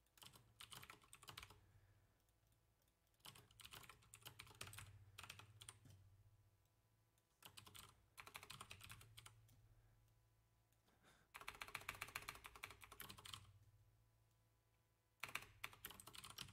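Computer keyboard typing: five quick runs of keystrokes, each a second or two long, separated by short pauses.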